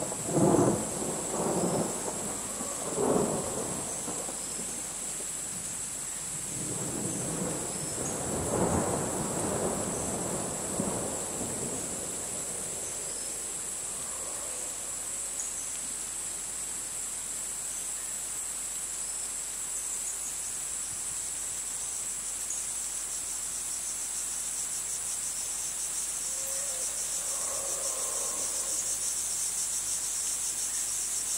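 Crickets chirring steadily at a high pitch, joined by two low rumbles in the first twelve seconds. In the last third the chirring turns into a fast pulsing trill.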